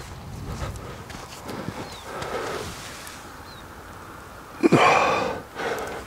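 Quiet outdoor ambience, then, near the end, a loud breathy exhale close to the microphone lasting about a second.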